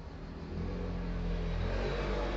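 Low rumble of a passing motor vehicle, growing louder from about half a second in.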